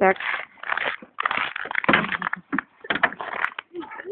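Footsteps crunching on packed snow, about two steps a second, with clothing rustling.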